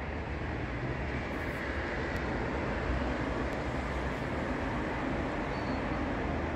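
Steady low rumble and hiss of distant city noise outdoors, with no distinct bang.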